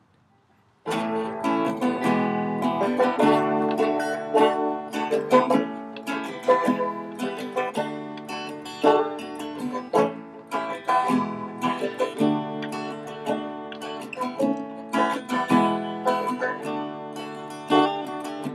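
Acoustic guitar and banjo playing together, an instrumental folk intro that starts abruptly about a second in.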